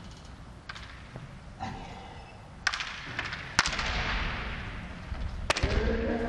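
Bamboo shinai striking and clacking against each other in several sharp cracks spaced a second or two apart, the loudest about three and a half seconds in, together with a heavy stamp of a bare foot on the wooden floor. Near the end a fencer's drawn-out kiai shout begins.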